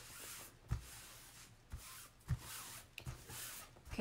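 Hands smoothing a silk-screen transfer down onto a cloth placemat: faint rubbing and swishing of palms over the screen, with a few soft thumps.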